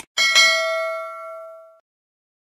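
Notification-bell sound effect of an animated subscribe button. A short click, then a bright bell ding struck twice in quick succession, ringing out and fading away within about a second and a half.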